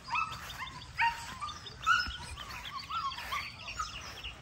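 Young chickens cheeping: a string of short, high-pitched calls, several a second, some dropping or rising in pitch.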